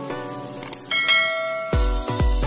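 End-screen music: a held chord, two short clicks, and a bright bell-like chime about a second in. An electronic dance beat with deep kick drums comes in near the end.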